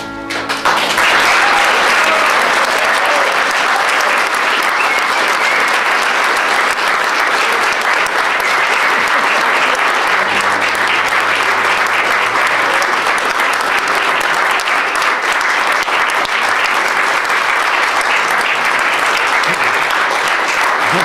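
An audience applauding: many people clapping, rising within the first second as the music stops and keeping up steadily.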